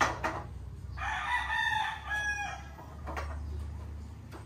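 A rooster crowing once, one call of about a second and a half starting about a second in. A short, sharp knock comes right at the start.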